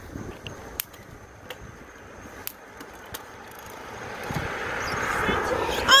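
Bicycle being ridden: steady rolling and wind noise on the phone's microphone, with a few sharp clicks. The noise swells and grows louder near the end.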